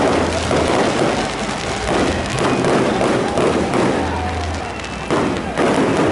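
Fireworks going off close by: a dense, continuous crackle of pops and bangs, with a sudden louder burst about five seconds in.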